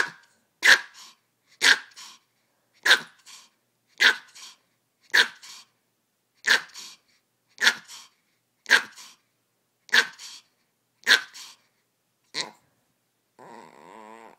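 A Pomeranian barking, about a dozen sharp single barks roughly once a second: demand barking for her ball to be thrown. Near the end the barks give way to a softer drawn-out sound.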